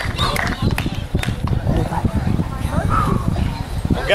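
Indistinct voices over a continuous, uneven low rumble, with a few faint clicks.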